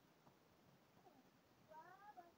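Near silence: room tone, with a brief faint high-pitched vocal sound from a toddler near the end.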